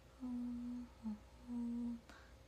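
A woman humming with closed lips: three short notes at much the same pitch, the middle one brief and slightly lower.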